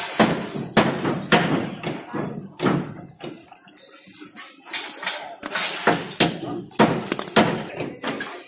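Irregular knocks and thuds, roughly one or two a second with a quieter stretch near the middle, as steel rebar is twisted and pushed into resin-filled holes drilled in a concrete column.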